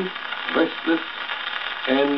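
A man reciting, played from a 78 rpm shellac record on a gramophone, with the record's steady surface hiss and crackle beneath. Speech pauses, with a couple of short syllables in the gap, and resumes near the end.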